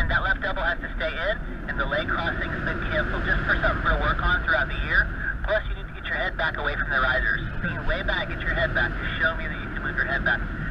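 Wind rushing over the camera microphone of a paraglider in flight, a steady low rumble, with an indistinct radio voice coming through thin and narrow.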